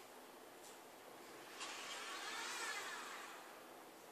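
Electric motor whine from a small mecanum-wheeled mobile manipulator robot. It starts suddenly about a second and a half in with a hiss, its pitch rises and then falls, and it fades out before the end.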